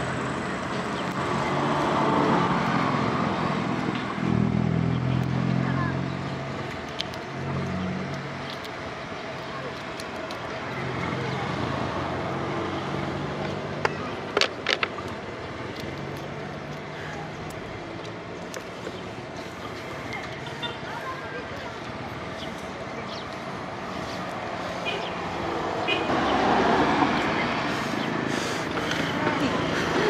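Road traffic: vehicle engines running and passing by, swelling and fading, with a couple of sharp clicks around the middle.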